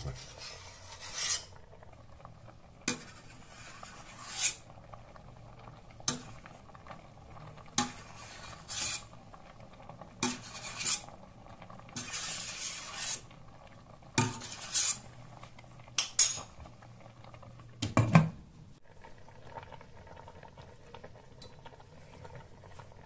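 Metal spoon skimming foam from boiling split peas in a stainless steel pot: repeated clinks and scrapes of the spoon against the pot, about one every one to two seconds, with one longer scrape midway. The clinks stop a few seconds before the end.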